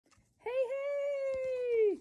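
A person's voice holding one long, steady high note that starts about half a second in and drops off at the end.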